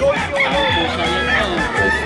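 Gamefowl roosters crowing and clucking, with one long held crow starting near the end.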